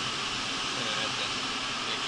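Steady rushing hiss of the heat-treatment heaters' blowers pushing hot air through the room.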